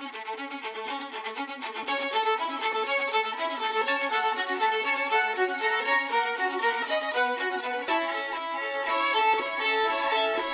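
Layered violin parts played with a bouncing sautillé bow, many short, rapid repeated notes a second, with a smoother legato line joining near the end.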